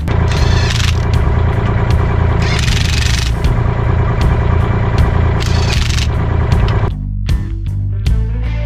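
Cordless impact wrench running on a truck wheel's lug nuts in several short hammering bursts, with rock background music underneath.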